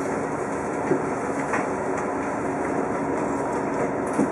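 Cabin noise of a TTC Orion V city bus in motion: steady engine and drivetrain hum with road noise, and a few short rattles and knocks from the body and fittings.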